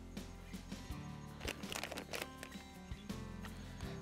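Quiet background music, with a few soft crunches and scrapes as potting soil is poured from a plastic cup into a clear plastic container.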